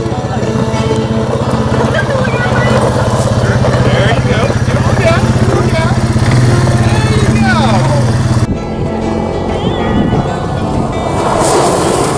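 Background music over a steady ATV engine drone, with voices over it. The engine drone stops abruptly about two-thirds of the way through.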